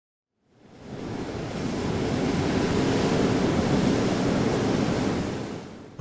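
A long rushing whoosh, a noise sound effect leading into a channel logo intro. It swells in from about half a second, holds, and fades away near the end.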